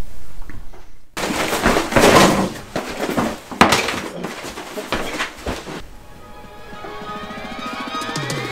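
A can of wood finishing oil shaken hard by hand, its contents sloshing and knocking in rough strokes about twice a second. Music comes in near the end.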